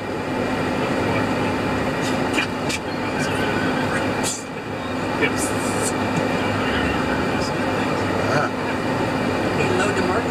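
Steady road and engine noise heard inside a moving car's cabin, with a constant low hum and a few brief clicks.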